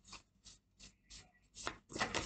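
A deck of oracle cards being shuffled by hand: a few faint, separate card snaps, coming quicker near the end.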